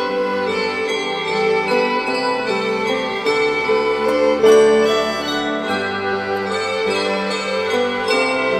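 Ensemble of tabletop sets of small tuned bells (Bergamasque campanine) struck with small hammers, playing a slow pastoral tune: many ringing notes overlap and sustain, with one louder stroke about four and a half seconds in.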